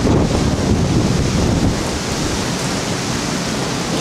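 Strong thunderstorm wind gusting through trees with rain falling, the gusts buffeting the microphone as a low, uneven rumble under a steady hiss.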